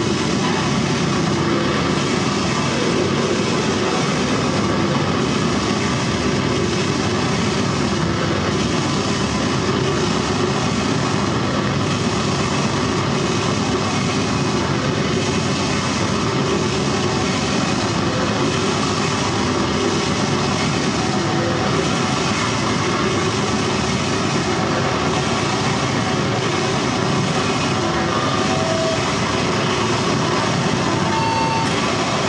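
A dense, steady wall of amplified electronic noise with no beat or pauses, generated live through a table of effects pedals and a mixer.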